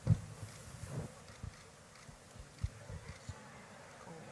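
Scattered dull low thumps over a faint hiss. The loudest comes right at the start, and a few softer ones follow over the next three seconds.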